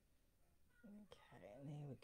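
Near silence with faint room tone for the first part. About a second in, a woman's voice starts and runs into speech.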